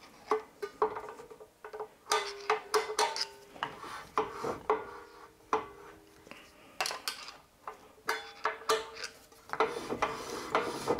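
Screwdriver working the parking-brake shoe adjuster through a hole in the brake disc: a string of irregular metallic clicks, each leaving the cast-iron disc ringing briefly.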